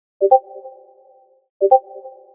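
Discord notification ping played twice, about a second and a half apart: each a quick two-note chime that rings out and fades over about a second.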